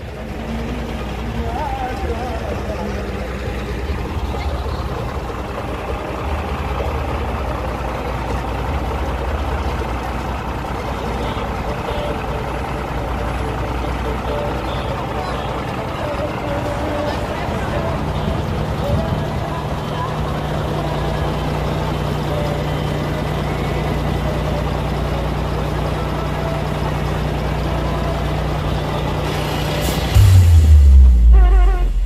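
Large truck engines idling with a steady low hum, a steadier tone settling in a little past halfway, under the indistinct talk of people standing around.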